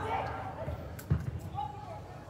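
A football kicked, a single sharp thud about a second in.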